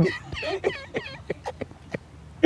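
A chicken clucking: a quick run of short calls over about the first second, then a few single clucks.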